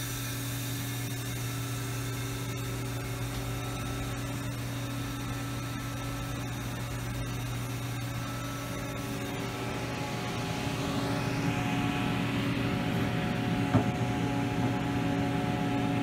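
Steady electrical hum with fan noise from a powered-up but idle Haas MDC 500 CNC vertical mill: a low mains hum with several steady overtones over a hiss. It grows a little louder and noisier about two-thirds of the way through, with one brief tap near the end.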